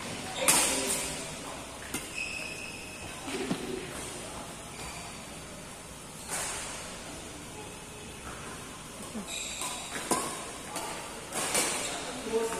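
Badminton rally: rackets striking a shuttlecock with sharp pops every second or few seconds, about six hits, in a large echoing hall.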